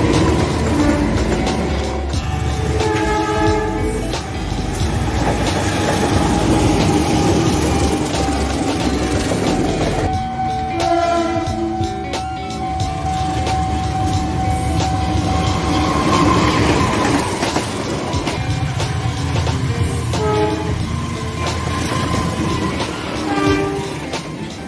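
Diesel-hauled passenger trains passing at speed, the rumble of wheels on rail running throughout with rail-joint clatter. Several short locomotive horn blasts sound, the longest about ten seconds in.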